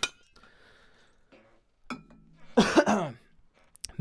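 A drink bottle's lid clicks shut with a sharp clink, then about two and a half seconds in there is a short throat-clearing cough after drinking.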